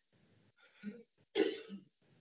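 A person clearing the throat over video-call audio: a faint short sound just before a second in, then a louder, short one a little after the middle.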